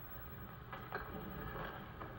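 Low steady background hum of an old film soundtrack played back through a television, with a few faint clicks.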